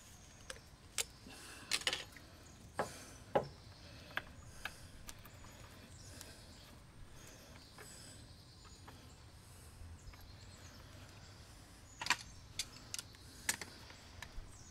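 Scattered light clicks and taps of metal plumbing fittings and an old outdoor spigot being handled and fitted by hand, with a quicker cluster of clicks near the end.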